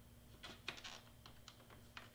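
Faint, scattered small plastic clicks and taps as fingers handle the ink tank caps of an inkjet printer.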